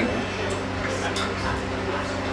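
Steady electrical hum from the band's amplifiers and PA, with low chatter in the room and a few faint clicks from instrument handling.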